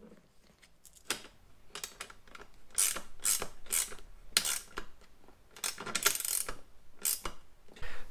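Short bursts of metallic clinking and rattling, about nine of them, as a seatbelt buckle and its bracket hardware are handled and fitted to a seat rail.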